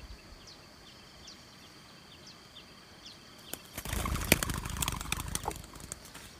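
A spotted dove taking off, its wings flapping in a loud, rapid clatter that starts a little past halfway and lasts about two seconds. Faint high chirps repeat in the background.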